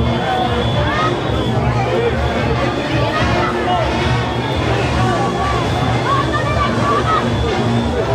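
Junkanoo rushing music, loud and steady, with drums beating underneath and horns over them, mixed with the voices and shouts of the crowd.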